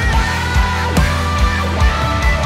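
Live rock-style worship band playing: kick drum beating under sustained bass and held electric guitar and keyboard tones.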